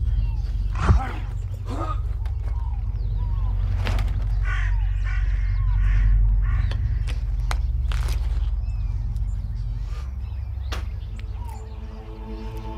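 Birds chirping and calling, many short rising and falling notes, over a steady low rumble, with one sharp thump about a second in.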